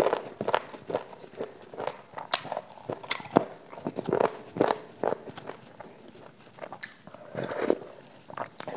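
A person chewing chicken close to a lapel microphone: irregular wet mouth clicks, smacks and soft crunches, several a second.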